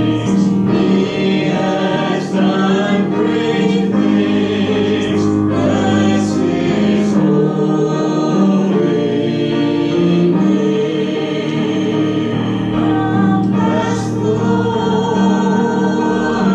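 A congregation singing a gospel chorus together in unison, with sustained, steady notes and no break.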